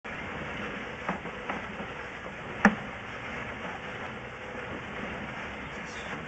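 Steady hiss and faint hum from a drain inspection camera's recording inside a sewer line, with a few sharp knocks: two light ones about a second in and a louder one about two and a half seconds in.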